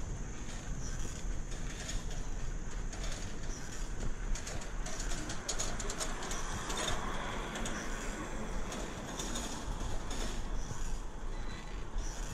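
Background noise of a bicycle ride along a quiet street: a steady rumble of wind and road noise, with birds calling from the trees.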